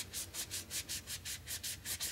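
A wet wipe rubbed briskly back and forth over a stamp, about five quick strokes a second, scrubbing off black permanent ink.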